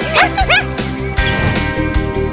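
Cartoon background music with a steady beat. Two short, high yips from a small dog in the first half-second, then a rising sweep as the music changes.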